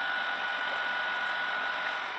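Delivery lorry's diesel engine idling: a steady running noise with one thin, high, steady whine over it.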